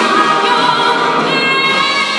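A female vocalist singing live with an orchestra. Her voice settles into a long held note in the second half.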